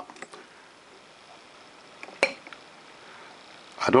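Plunger of an Onoto plunger-filler fountain pen pushed down once with the nib in the ink bottle, giving a single sharp pop a little past halfway, with a few fainter clicks around it. The pop at the end of the stroke shows the plunger seal is working and the pen is drawing ink.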